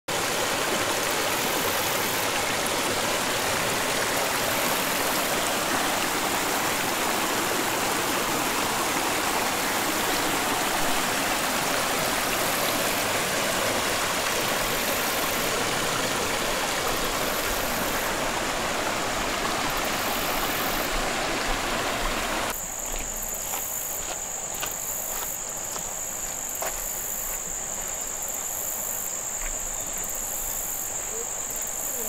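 Creek water rushing steadily over a rocky riffle. About two-thirds of the way through it cuts off abruptly, giving way to a steady high-pitched buzz of insects.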